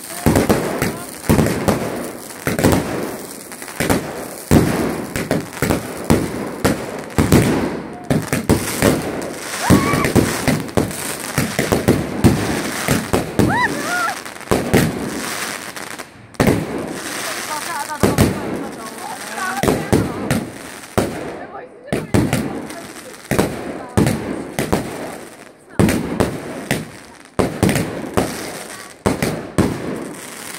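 A fireworks display going off in rapid succession: dense, repeated sharp bangs and crackling bursts, with people's voices in between.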